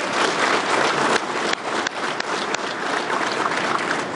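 A large audience applauding steadily, a dense mass of hand claps.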